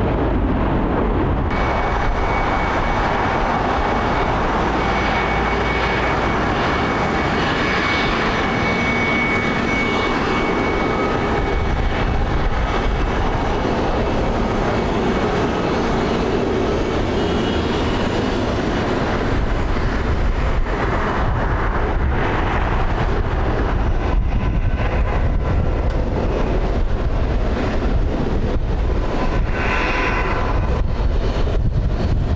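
Airbus A350 airliner's Rolls-Royce Trent XWB turbofan engines running: continuous loud jet noise with a deep rumble. A thin high whine sits on top for the first several seconds.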